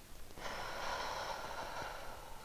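One long, audible breath by a person, starting about half a second in and lasting about a second and a half.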